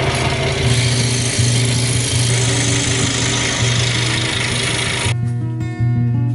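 Scroll saw cutting a thin maple blank: a dense, steady buzzing rasp that stops abruptly about five seconds in. Guitar music plays underneath.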